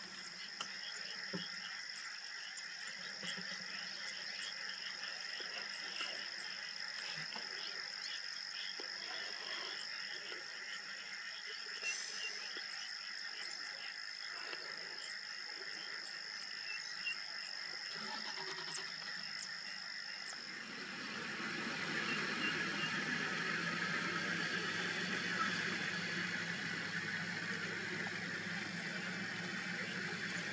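Frogs croaking in wet grassland over a steady high-pitched trill. About two-thirds of the way through, the trill stops and a louder, even hiss takes over.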